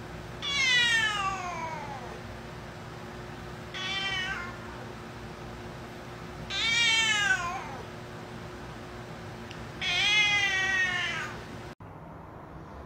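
A cat meowing four times. The first, third and fourth meows are long and drawn out and fall in pitch at the end; the second, about four seconds in, is short.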